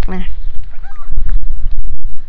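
Wind buffeting the microphone: a loud low rumble with gusts, the loudest in the second half.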